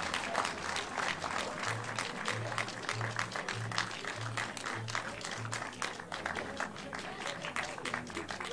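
Audience applauding, with a low note pulsing under the clapping about seven times from around two seconds in to five and a half seconds.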